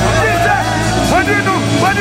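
Live gospel worship band holding sustained low chords while a lead vocalist sings and calls out over them through the PA.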